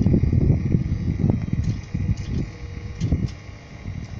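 Wind buffeting the microphone outdoors: a low, gusty rumble that fades away near the end.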